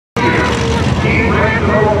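Engines of a field of dirt modified race cars running together at low pace behind one another, with a voice over a loudspeaker on top.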